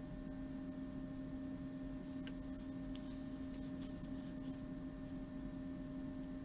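Steady low electrical hum with a few fixed tones, and a couple of faint ticks about two and three seconds in.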